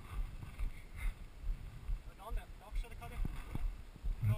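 Scott Scale RC 29 hardtail mountain bike rolling slowly down a forest trail, heard as an uneven low rumble on the camera microphone. Two sharp knocks come from the bike on the trail about three-quarters of the way through, and a faint voice comes just before them.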